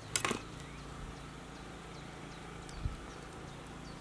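A kitchen knife cutting through a lime onto a wooden cutting board: a quick cluster of knocks just after the start, then one soft thump near the end.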